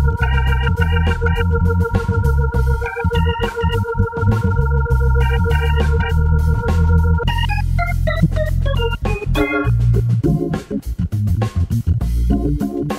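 Hammond B3 organ played live: a single high note is held for about seven seconds over rhythmic chord stabs and a moving bass line, then the playing breaks into quick descending runs.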